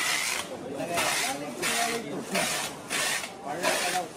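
Packing tape being pulled off a handheld tape dispenser as a cardboard box is wrapped, a screeching rip repeated in short pulls more than once a second.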